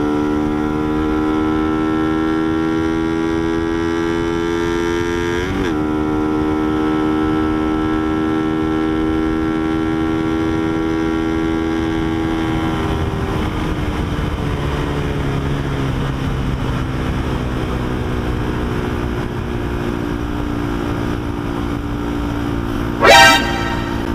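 A Honda CBR150R's single-cylinder engine pulls steadily under throttle, its pitch slowly rising, with a brief dip at a gear change about six seconds in. About halfway through the throttle comes off and the engine settles to a lower, quieter run over wind rumble. Near the end there is a short, loud horn toot.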